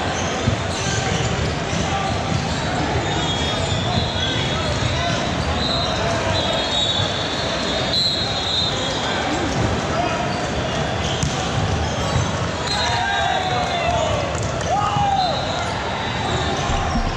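Busy indoor volleyball gym: indistinct voices of players and spectators echo around a large hall, with repeated thuds of volleyballs being hit and bouncing on the hardwood floors, one sharper thud about half a second in.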